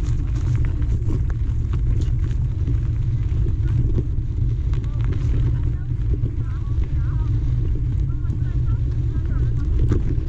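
Steady low rumble of wind on the microphone and riding noise from a bike rolling along a dirt singletrack.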